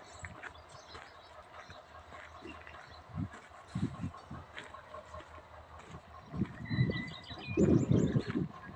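Small birds chirping now and then, with a short steady whistled note about seven seconds in, over irregular low thumps that get loudest near the end.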